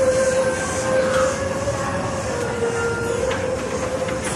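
A moving escalator running, heard from on the steps: a steady mechanical whine over a rumbling hiss. The whine's pitch wavers and dips slightly partway through.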